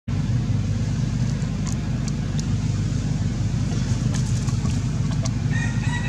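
A steady low rumble with a few faint clicks. Near the end a brief high-pitched chirping call comes in.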